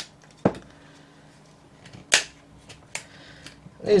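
Plastic snap-fit clips of a portable Wi-Fi hotspot's case clicking as the case is pried apart with a thin tool: three sharp clicks with a few fainter ticks between.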